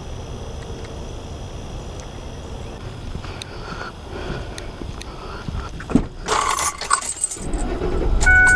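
Car keys jangling near the end, just after a single thump, over a low steady background hiss with a few light clicks.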